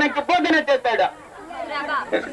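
Speech only: a voice talking, with a brief softer gap a little past the middle.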